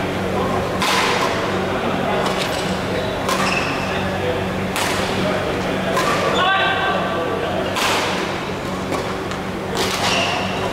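Badminton rackets hitting the shuttlecock in a rally, sharp hits every one to two seconds, with short squeaks of shoes on the wooden court about two-thirds of the way through. The sound echoes in a large hall over a steady low hum.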